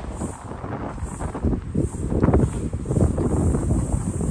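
Wind buffeting the microphone as a low, gusting rumble, loudest about halfway through.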